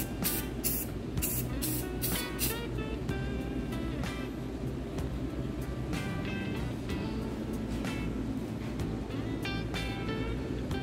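Aerosol spray-paint can given quick short squirts, about six brief hisses in the first two and a half seconds and a couple more near the end, over steady background music.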